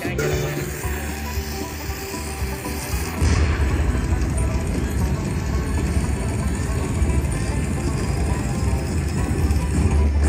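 Slot machine sound effects: feature music playing, then about three seconds in a loud boom with a low rumble that carries on as the dynamite bonus symbol goes off and reveals a gold-nugget credit prize.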